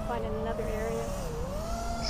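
FPV quadcopter's motors and propellers buzzing, the pitch drifting up and down as the throttle changes.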